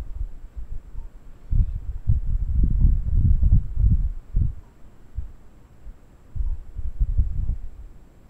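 Irregular low rumbling thumps of a clip-on microphone being handled, its cable rubbed and knocked, heaviest through the middle and again near the end.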